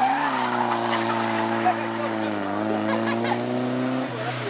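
Drift car's engine held high in the revs through a long sideways slide: a steady engine note that sags slightly about halfway and climbs back. The rear tyres skid underneath it.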